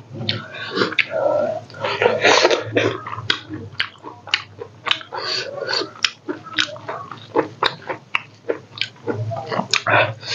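Close-miked wet chewing and lip-smacking of a mouthful of rice and pork, with irregular sharp clicks and smacks several times a second and a few short, breathy bursts.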